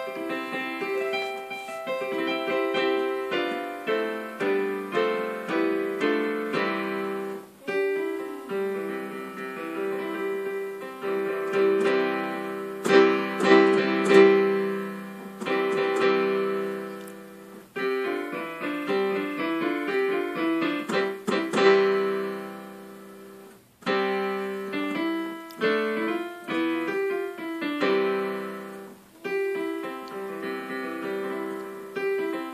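Digital piano played by hand: a sequence of sustained notes and chords, with a few short breaks between phrases.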